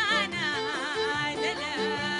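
A woman singing a Sudanese song, her voice wavering quickly up and down in ornamented runs, over instrumental backing that repeats a short note every third of a second or so.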